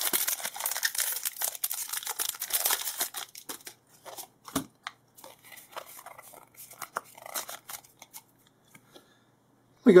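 Foil booster-pack wrapper being torn open and crinkled, a dense crackling for the first three to four seconds, then thinner rustles and clicks as the trading cards are pulled out and fanned through, fading to near quiet shortly before the end.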